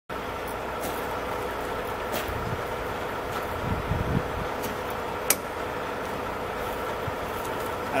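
Steady mechanical hum with faint low thumps, and one sharp click about five seconds in as the light tester's plug is pulled out of the trailer's front electrical socket.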